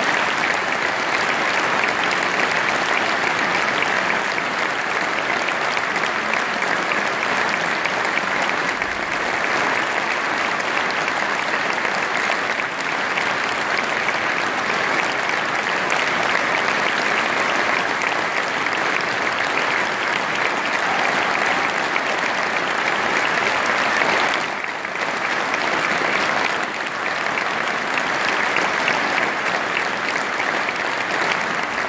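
Audience applauding steadily, with a brief dip about 25 seconds in.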